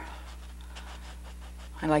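Bristle brush scrubbing oil paint onto canvas in faint, irregular strokes, over a steady low hum.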